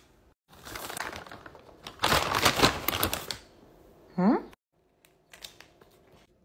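Snack packaging being handled: rustling, then a louder burst of rapid crackly crinkling. A short sound rising quickly in pitch follows about four seconds in, then a few faint clicks.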